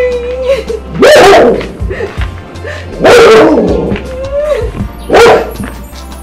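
A dog barking three times, loudly and about two seconds apart, over background music.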